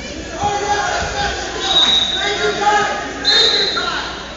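Shouting voices in a large gymnasium hall during a freestyle wrestling bout, getting louder about half a second in. Two long, high held notes come through, one around halfway and one near the end.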